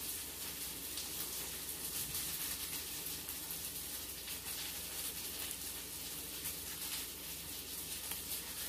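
A crisp breaded air-fried chicken nugget being pulled apart by hand, with faint crackling over a steady background hiss.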